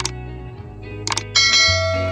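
Background music with subscribe-button animation sound effects: a mouse click at the start, a couple of quick clicks just after a second in, then a bright bell-like notification chime.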